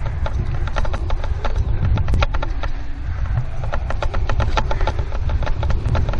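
Running footfalls on a dry grass trail, a quick, steady series of knocks about four or five a second, with wind rumbling on the helmet-mounted microphone.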